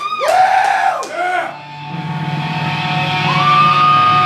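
Loud yells and whoops in the first second and a half, then a sustained low bass note ringing through the amps, joined about three seconds in by a held, steady electric guitar tone, all at a loud live metal show.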